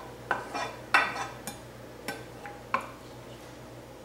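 A wooden spatula scraping and knocking against a skillet as chopped onions and green peppers are pushed off it into a pot: a handful of short scrapes and taps, the loudest about a second in, stopping before the three-second mark.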